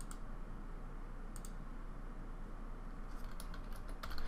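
Computer keyboard typing: a short run of quick keystrokes near the end, after a single click about a second and a half in, over a low steady background hum.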